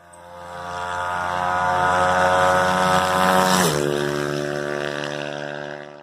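An engine note held at high revs, fading in, then dropping in pitch about three and a half seconds in and fading away.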